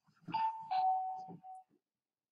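Two-note electronic chime, a higher note falling to a lower one like a doorbell's ding-dong, with a brief repeat of the lower note just after.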